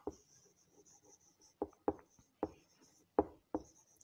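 A marker pen writing a word on a whiteboard: faint sliding strokes, with about six short, sharp taps and squeaks of the tip in the second half.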